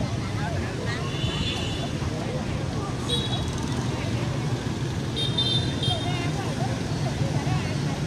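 Street traffic with a steady low rumble, people talking in the background, and a few short, high-pitched beeps.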